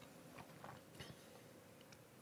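Near silence: quiet room tone with a few faint, soft clicks in the first second, small mouth sounds of sipping and tasting tea from a cup.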